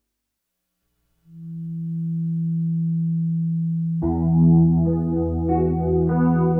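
Background music: after about a second of silence, a held low synthesizer note swells in, and other instruments join with a melody about four seconds in.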